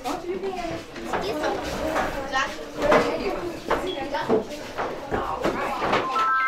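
Children and adults chattering and laughing over one another, with a few knocks and bumps as they move about.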